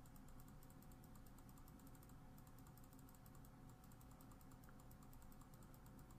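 Near silence: faint room tone with a steady low hum and faint fine high ticking.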